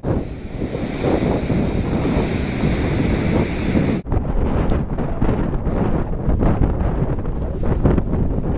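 Loud wind buffeting the microphone in uneven gusts, a low rumble that drops out for a moment about halfway through.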